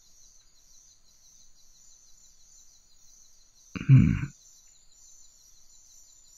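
A deep, growly male voice gives one short low "hmm" about four seconds in, over a faint, steady, high-pitched background ambience that pulses evenly.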